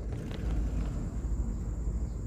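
Low, uneven rumble of a distant CC 202 diesel-electric locomotive hauling a long freight train.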